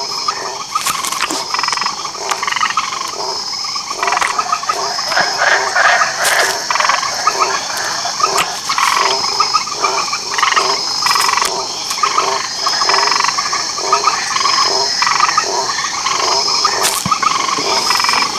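Chorus of frogs croaking in rapid, overlapping pulsed calls, with insects trilling in a high tone that comes in short dashes about once a second, and a few sharp clicks.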